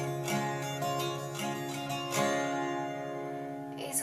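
Acoustic guitar strummed alone between sung lines: a run of chord strums, then about halfway through a chord is left ringing and fades away.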